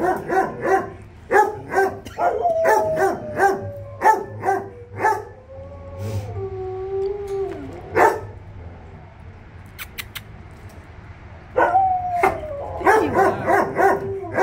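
A dog barking in quick runs of short barks. A long howl slides down in pitch from a few seconds in until about eight seconds. After a quieter spell, the barking and another falling howl start up again near the end.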